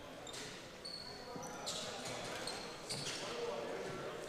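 A basketball bouncing a few times on a gym's hardwood floor, the shooter's dribbles at the free-throw line, under faint voices in the echoing hall. A few brief high squeaks also sound.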